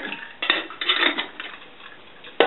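Titanium camping kettles and a lid clinking and knocking together as they are handled, a few metal knocks in the first second or so, then quieter.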